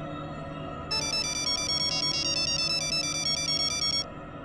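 Mobile phone ringing for an incoming call: a high electronic ringtone of quick repeating notes starts about a second in and cuts off suddenly as the call is answered.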